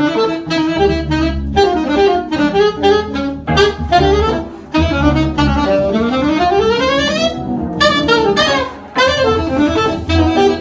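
Saxophone playing jazz practice phrases, quick runs of notes with short breaks for breath, including a long rising run about six seconds in.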